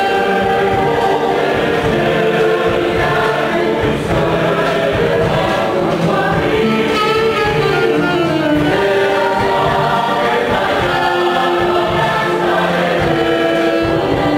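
Mixed choir of men and women singing in several-part harmony, mostly held notes that move from pitch to pitch.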